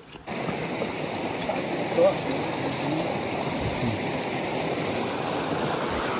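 Stream water running fast over rocks, a steady rushing noise that cuts in suddenly just after the start.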